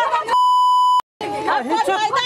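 A steady, high-pitched censor bleep lasting about two-thirds of a second masks a word in a shouted argument. It cuts off abruptly, and after a brief gap the agitated voices resume.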